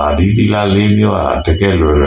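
A Buddhist monk's voice delivering a sermon in long, evenly held syllables, with a brief break about one and a half seconds in.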